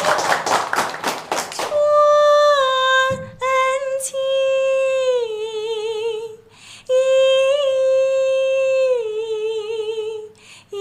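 Clapping for the first two seconds, then a woman singing Chinese opera in the huadan (young female role) style, unaccompanied. She holds long high notes that slide downward and waver at their ends, with a brief break near the middle.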